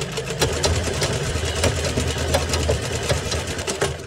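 Sewing machine running, with rapid, even clicking over a low motor hum; it stops at the end.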